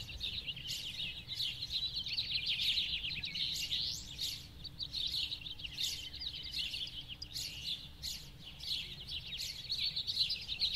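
Morning birdsong: several birds chirping at once, a steady run of quick, high, overlapping chirps.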